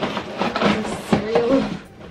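Cardboard cereal box scraping and rustling against a crowded cart shelf as it is worked loose and pulled out, with scattered clicks and knocks.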